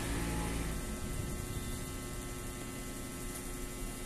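Steady electrical mains hum with a faint hiss, easing slightly in level.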